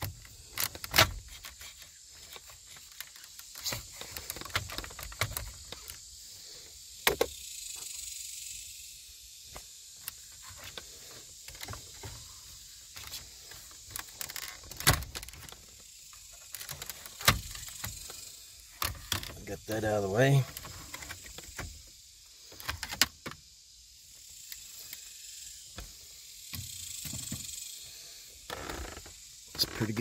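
Scattered sharp plastic clicks and knocks of Cadillac STS center-stack dash trim being pried at and handled around the radio.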